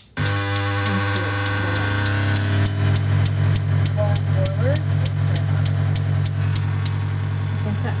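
Gas oven's electric spark igniter ticking about three to four times a second while the control knob is held in to light the burner, stopping about seven seconds in. A loud steady low hum starts with it and keeps going.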